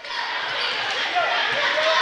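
Steady murmur of a crowd in a school gymnasium, with a basketball being dribbled on the hardwood court.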